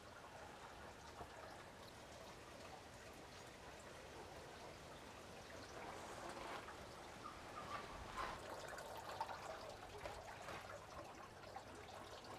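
Faint steady trickle of nutrient solution running through hydroponic NFT channels, with a few soft knocks in the second half as peat-pellet seedlings are dropped into the channel holes.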